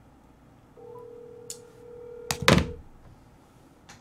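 A steady single-pitched beep lasting about two seconds, with a few sharp clicks and one loud knock about two and a half seconds in.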